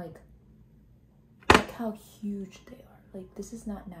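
A woman speaking in short phrases after a pause, starting about a second and a half in with a sharp click-like onset, the loudest moment.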